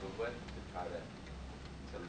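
A person speaking in a classroom, with a few faint ticks under the voice.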